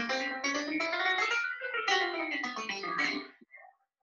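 A quick run of notes played on GarageBand's on-screen keyboard instrument on an iPad. The notes climb in pitch and then come back down, stopping a little after three seconds in.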